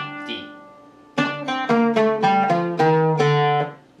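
Oud, a fretless lute, plucked note by note: one note at the start, then after a short pause a quick run of about nine notes falling in pitch and ending on a longer low note. It plays through the maqam Bayati / Abu Ata scale, which has a quarter-flat second degree (E quarter flat).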